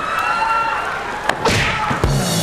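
Studio audience laughing and clapping, with a sharp thud about a second and a half in, just after a lighter knock.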